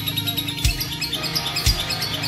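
Lovebird chattering in quick, unbroken runs of short high chirps, the continuous 'konslet' song that lovebird keepers prize. Background music with a steady beat about once a second plays over it.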